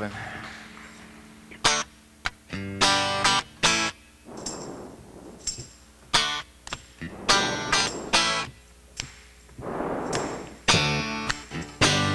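Acoustic guitar strummed in short, separate chords several times, with quiet gaps between them.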